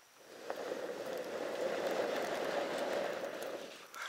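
A person blowing one long steady breath into a metal bucket of glowing embers to feed them oxygen; the rush of air swells and fades over about three and a half seconds as the embers flare.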